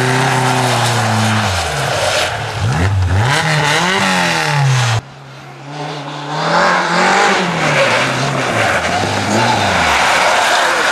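Rally car engines at high revs on a snowy stage. The Skoda hatchback's engine holds steady, then its revs drop and flick up and down several times as it goes through a corner. After a sudden cut about halfway through, a second rally car's engine comes in quieter, then rises and wavers as the car approaches.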